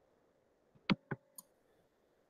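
Two short, sharp clicks about a fifth of a second apart, a little under a second in, then a faint high tick.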